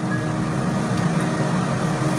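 Steady low mechanical hum and rumble, unchanging throughout.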